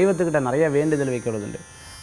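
A man's voice chanting a devotional verse on a steady, slightly wavering pitch. It stops about one and a half seconds in, leaving a short pause before the voice returns.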